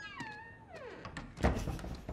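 A cat's meow, one call falling steadily in pitch, followed about a second and a half in by a loud burst of laughter.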